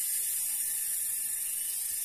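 A steady high-pitched hiss that holds level throughout, with nothing else standing out.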